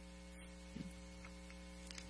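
Faint, steady electrical mains hum, a low buzz with evenly spaced overtones, carried in the pulpit microphone audio while no one speaks.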